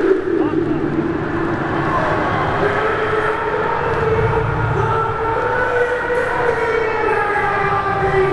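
Loud echoing arena din, with a long, drawn-out voice wavering in pitch over it.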